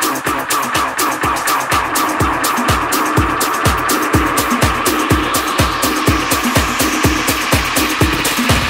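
Tech house DJ mix with a steady four-on-the-floor beat and busy hi-hats. The kick drum and bass come back in over the first couple of seconds as the low end is brought up on the mixer. A rising noise sweep builds through the second half.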